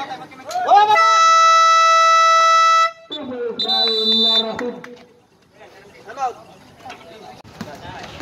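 Basketball game buzzer sounding one loud, steady electronic tone for about two seconds, starting about a second in and cutting off sharply. A short high referee's whistle follows about a second later, among voices.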